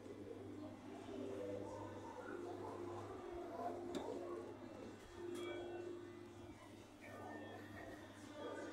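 Faint low cooing of a bird, a few drawn-out coos, over a steady low hum.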